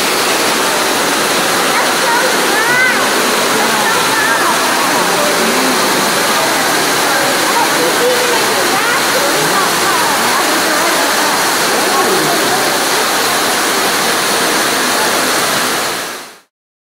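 Ruby Falls, an underground cave waterfall, pouring steadily into its pool: a loud, even rush of falling water. Faint voices can be heard under it.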